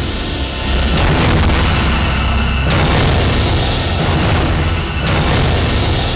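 Dramatic TV-serial background score with deep booming hits, several struck a second or two apart over a heavy low drone.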